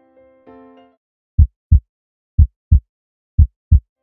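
An intro sound effect: soft electric-piano chords fade out about a second in. Then come three loud, low double thumps about a second apart, a lub-dub heartbeat pattern.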